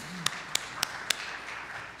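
Congregation applauding, with several loud, sharp single claps close by standing out about three times a second; the applause dies away near the end.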